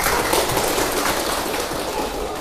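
Audience applauding, a dense patter of many hands that starts at once and thins out near the end.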